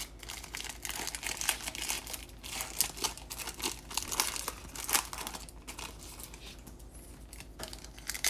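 Foil trading-card pack wrapper being torn and peeled open by hand, crinkling in irregular bunches, with a quieter spell near the end.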